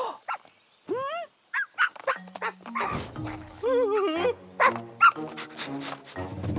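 Cartoon puppy yipping and barking, with a quick rising yap about a second in and a wavering whine around four seconds, over light background music that steps from note to note.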